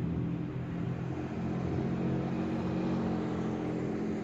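Motor vehicle engine running at low speed as it drives slowly past close by, a steady low hum that drops away just as the vehicle moves on.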